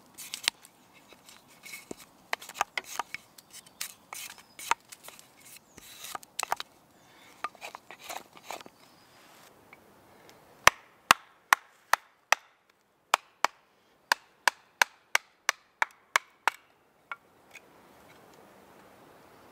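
Batoning: a wooden baton strikes the spine of a knife to split a length of wood on a chopping stump, in a run of about fifteen sharp knocks, roughly three a second, in the second half. Before that come irregular cracks and clicks as the wood is split.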